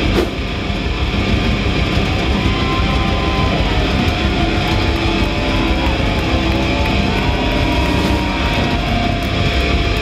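Doom metal band playing live: heavily distorted electric guitars, bass and drums, with long held guitar notes sliding in pitch above the low rumble.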